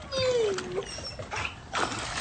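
A drawn-out cry falling in pitch, then splashing water near the end as a child steps and jumps into a swimming pool.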